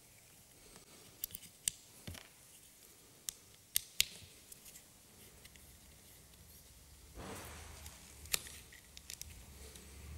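Faint sharp clicks and ticks of a screwdriver working Torx screws out of a plastic parking-brake actuator gearbox housing, with a brief scraping rustle about seven seconds in.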